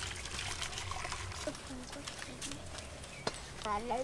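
Thick orange syrup poured from a metal pot into a steel bowl, a faint pouring trickle. A single sharp click comes near the end.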